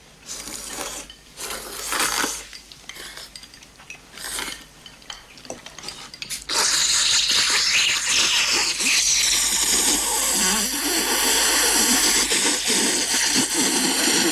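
A man slurping noodles, one long, loud, continuous slurp that starts about halfway through and runs to the end. Quieter, broken sounds come before it.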